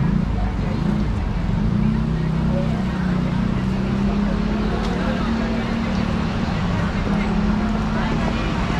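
Street noise dominated by a steady low engine hum from traffic, with passers-by talking.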